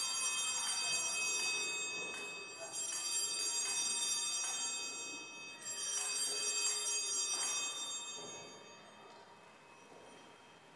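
Altar bells (sanctus bells) rung three times, each a bright shake of small bells that rings on and fades, the last dying away near the end; this signals the elevation of the chalice at the consecration.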